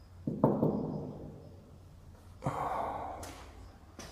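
A person breathing out heavily twice, close to the microphone: once just after the start, fading over about a second, and again about two and a half seconds in.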